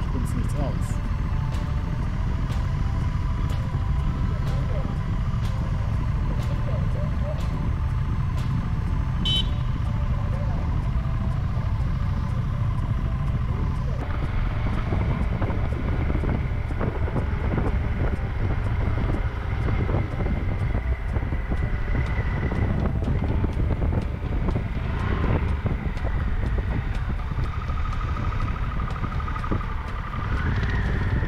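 Motorcycle running steadily at road speed, with a heavy, steady wind rumble over the microphone of the camera riding on the bike.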